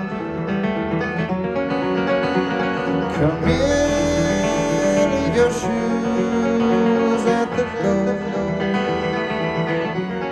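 Steel-string acoustic guitar played in a slow song with a man singing over it, heard through a concert PA. A long held note comes in about three and a half seconds in.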